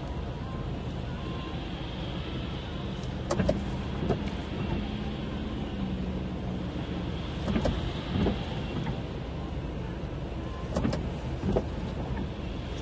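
Inside a car standing at a red light: a steady low hum of the idling engine, with short light knocks that come in pairs about every four seconds.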